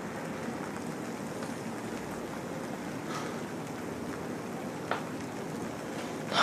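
A steady, even hiss of background noise, with a brief faint tick near the five-second mark.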